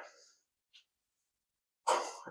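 Near silence, with a short intake of breath near the end.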